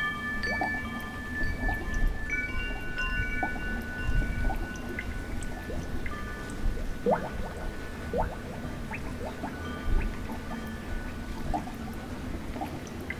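Chime-like ringing tones: several clear high notes struck just before the start and another set about two and a half seconds in, each ringing on for several seconds. Short, quickly rising plinks like water drips are scattered throughout.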